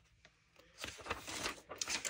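Paper pages rustling as loose-cut pages are lifted and pulled out of a book, a quick run of soft rustles beginning just under a second in.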